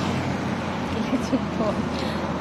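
Steady outdoor background noise with a low hum, and a voice speaking softly about a second in.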